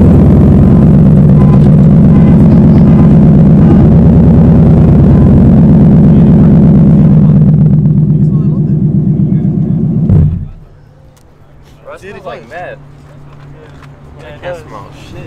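Ford Mustang GT's 5.0 V8 running at a steady, loud idle close to its exhaust, then shutting off abruptly about ten seconds in.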